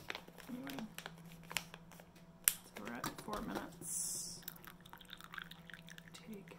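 Small handling noises, clicks and a crinkle of a paper tea filter, mixed with quiet mumbled speech, and a short breathy sniff about four seconds in as the steeped tea is smelled.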